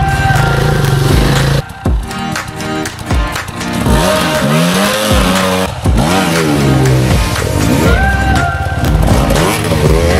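Off-road motorcycle engines revving, their pitch rising and falling in swoops about halfway through, with music playing over them.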